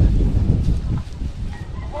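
Wind buffeting the microphone, with a faint chicken call over it in the second half.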